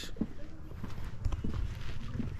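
Footsteps on a stone-paved path: a few short, irregular steps over a low rumble.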